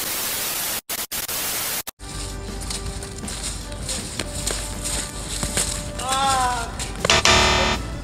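A burst of TV static with glitchy cut-outs, then background music. Near the end comes a short, loud, harsh buzzer, like a game-show wrong-answer sound, marking a missed shot.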